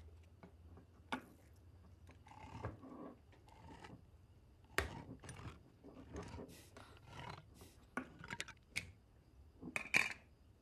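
Hand can opener cutting open a metal can of dog food: irregular metallic clicks and short rasping turns, with a few sharper knocks, the loudest about five seconds in and at the end.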